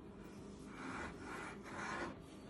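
Quiet rubbing and handling noise as a hand turns a metal food can, with a few scratchy swishes in the second second.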